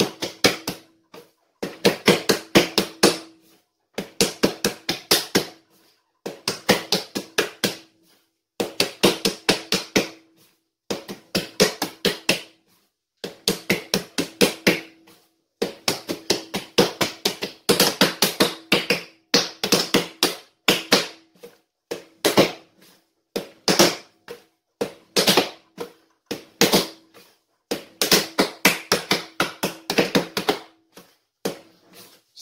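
Hands kneading and slapping a ball of yeast dough on a countertop: bursts of rapid taps and slaps, each about a second long, repeating about every two seconds.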